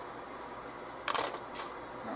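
Plastic squeeze bottle squeezed over a bowl, giving two short sputtering bursts about a second in.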